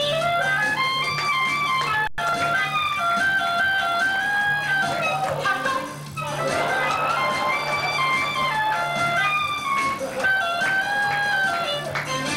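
Clarinet playing a stepwise melody over a steady low accompaniment, with a short break in the tune about six seconds in.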